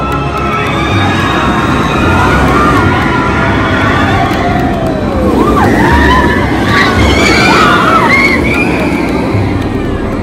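Jurassic World VelociCoaster train running along its steel track overhead, a steady rumble and rush, with riders screaming, most of the screams in the second half.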